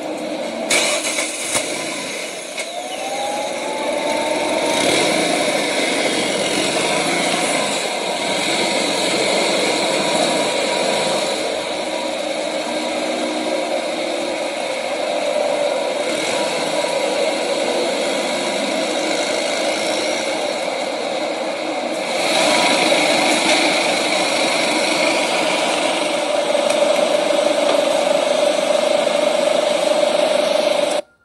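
DC Avanti sports car's engine running in city street traffic, with a short rise in pitch about three seconds in and growing louder at about 22 seconds.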